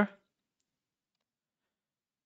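The end of a spoken word, then near silence.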